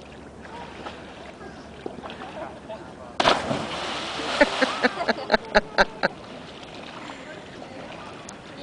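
A person jumping off a high rock and plunging into a river: one loud splash about three seconds in, with spray rushing down for about a second afterwards.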